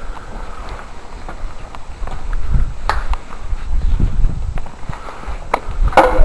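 Footsteps on bare rock, with a few sharp scuffs and clicks, over a low rumble on the microphone that grows heavier after about two seconds.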